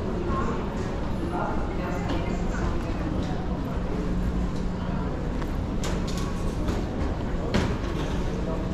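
Baggage hall ambience: a steady low hum with faint voices of other travellers, and a few sharp clicks near the end.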